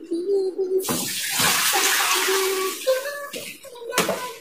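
Kitchen tap water running into a plastic basin in the sink, starting about a second in and stopping after about two seconds.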